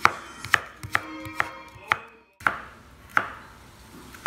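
Kitchen knife chopping carrots into thin strips on a plastic cutting board: about seven sharp knocks of the blade on the board, roughly two a second, with a brief break just past halfway.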